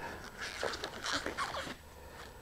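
Disposable gloves being pulled onto the hands: a run of short rubbing and stretching sounds with a few brief squeaks, fading out near the end.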